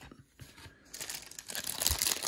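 Cellophane wrapper on a stack of baseball trading cards crinkling as it is handled and pulled open, starting about a second in.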